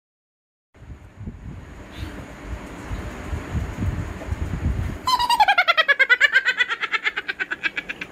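A low rumbling noise, then about five seconds in a loud, fast-pulsing cackling laugh that falls in pitch.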